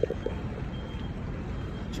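Low steady rumble of road vehicles, such as parked coaches and vans running nearby.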